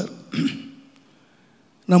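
A man briefly clears his throat into a close microphone in a pause between spoken phrases.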